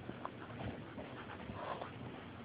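A Boston terrier making faint, brief sounds close by, with a few soft ticks.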